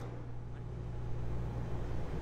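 Steady low hum of a large hall's room tone, with a faint even hiss.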